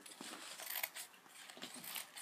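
Scissors snipping through a folded paper coffee filter, a few short separate cuts as petals are shaped.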